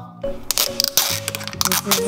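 Plastic wrap on a toy surprise ball tearing open along its pull strip: a quick run of crackles, over background music.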